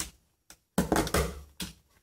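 Utility knife blade slicing down through a 3D-printed plastic brim under pressure: a click at the start, then, a little before the middle, about a second of scraping and crackling with small knocks.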